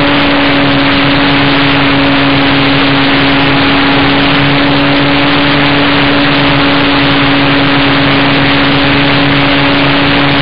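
Electric motor and propeller of an E-flite Beaver RC model plane, heard from a camera on board, running at a steady pitch with a constant hum. Dense rushing airflow noise over the microphone runs along with it.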